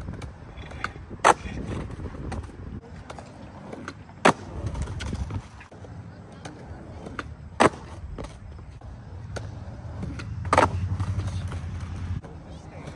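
Skateboard wheels rolling on concrete with a steady low rumble, broken by four sharp cracks of the board about three seconds apart. The rumble is loudest near the end.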